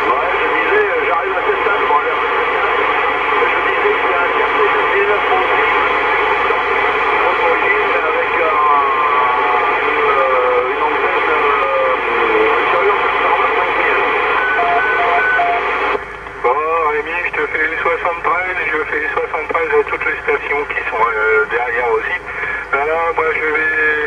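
CB radio receiving a weak AM transmission on channel 19: a voice half-buried in loud static hiss, with a couple of brief whistles in the middle. About two-thirds of the way through the hiss drops and the voice comes through more clearly.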